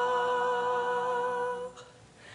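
A cappella vocal group of young male and female singers holding one sustained chord on steady pitches, released together near the end.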